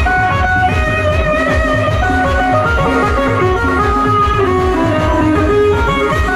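Loud music played through a large stack of outdoor loudspeaker cabinets: a fast, steady, heavy beat under a melodic lead line with a plucked, guitar-like sound.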